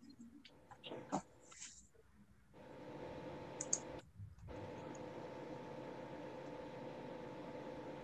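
Faint steady room noise with a light hum from an open microphone on a video call, starting about two and a half seconds in and cutting out briefly about four seconds in. A few faint soft noises come before it.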